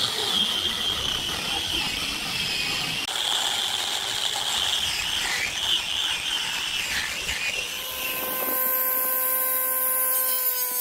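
Angle grinder with a sanding disc sanding a wooden beam, its motor whine wavering as the disc is worked over the wood. About eight and a half seconds in it gives way to the steady, even hum of a spinning table saw blade.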